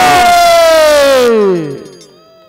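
A man's long, loud, amplified cry, held and then sliding steadily down in pitch until it fades out near the end, over a rush of noise that stops just after a second in.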